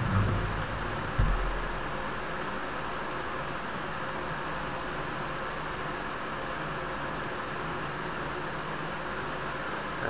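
Faint airy hiss of a long drag drawn through a small low-resistance e-cigarette cartomizer and the vapour breathed out, over a steady background hiss. A soft low thump about a second in.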